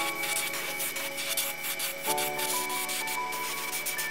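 Iwata Neo CN airbrush spraying iridescent turquoise paint at about 40 PSI, a steady hiss, under background music with sustained chords that change about two seconds in.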